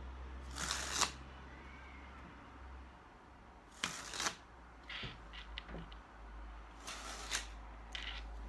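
A deck of playing cards joined into one chain, spilling from one hand into the other and rattling in three short flurries of about half a second each: about half a second in, about four seconds in, and near the end. The cards fall as one linked cascade because they are all attached.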